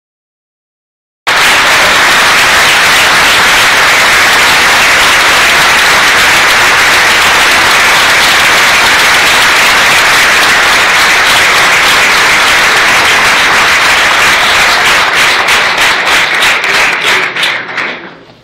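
Loud applause from an audience, starting suddenly about a second in and thinning to scattered claps that die away near the end.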